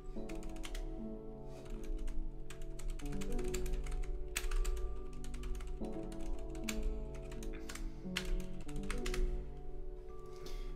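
Clicks of typing on a computer keyboard, in irregular runs, over quiet background music whose held chords change every few seconds.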